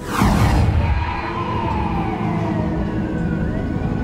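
A sudden whoosh sweeping down in pitch, then slow siren wails gliding down and up over a low rumble.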